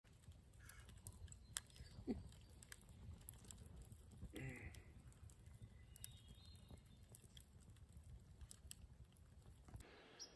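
Quiet crackling of a small wood campfire, with scattered sharp pops over a low rumble. Two brief faint pitched sounds stand out, one about two seconds in and one near the middle.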